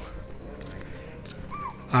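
A single short deer alarm call, rising then falling in pitch, about one and a half seconds in, over a low steady background hiss: the warning deer give when a tiger is moving nearby.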